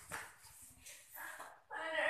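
A girl's voice making short, wordless vocal sounds in character, broken into pieces, with a pitched cry near the end; a thump is heard right at the start.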